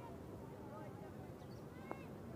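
Faint chirping of small birds over a quiet outdoor background, with one sharp click near the end.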